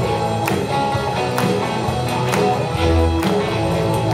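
Live rock band playing an instrumental passage: distorted electric guitars and bass over a steady drum beat from an electronic drum kit, with a strong hit about once a second.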